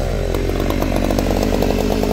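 Gasoline chainsaw cutting into a large ash log; the engine's pitch falls in the first half second as the chain bites into the wood, then holds steady.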